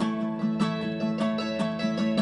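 Mandolin and acoustic guitar playing together: a quick run of picked notes over a steady accompaniment.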